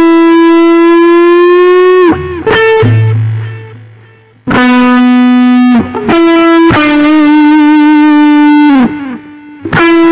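Gibson electric guitar played through distortion, picking a slow single-note lead line. Long sustained notes, one with wide vibrato, several ending in a slide down in pitch. A lower note is left to fade out about three seconds in before the line resumes.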